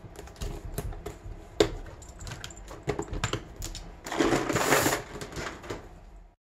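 Irregular plastic clicks and clacks as gel pens are picked through and handled in a clear plastic pen case, with one sharp click about a second and a half in. About four seconds in comes a second-long rustle of paper prints being slid on the desk.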